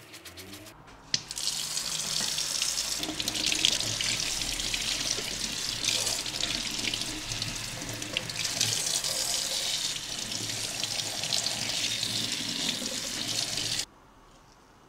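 Kitchen tap running into a stainless steel sink, the water splashing over gloved hands as they rinse soap suds off a piece of metal. It starts suddenly about a second in and cuts off abruptly just before the end.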